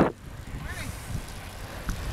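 Low, steady wind rumble and rolling noise from a bicycle in motion, with a small click near the end.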